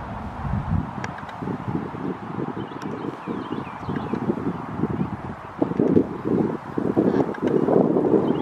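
Wind buffeting the camera microphone in uneven low gusts that grow stronger in the second half, with a few faint high chirps about three seconds in.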